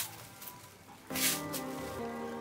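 A clear plastic bag crinkling as hands load small fish into it, with a sharp crackle right at the start and a short rustle just after a second in. Background music with steady held notes comes in about a second in.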